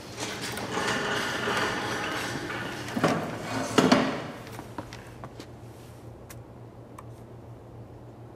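A metal kitchen trolley being wheeled away, rattling, with two sharp knocks about three and four seconds in; after that only a few faint clicks over a steady low hum.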